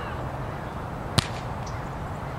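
A single sharp slap of a volleyball against a player's hands about a second in, over a steady low outdoor background rumble.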